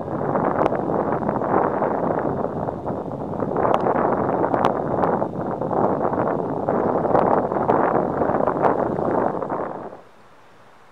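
Wind buffeting the camera microphone: a loud, steady rushing noise, with a few faint ticks scattered through it.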